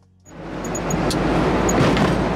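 Quiet music fades out, then the steady rush of a small car driving at road speed rises quickly and holds: road and wind noise heard from inside the car. A few faint, short high chirps sound over it.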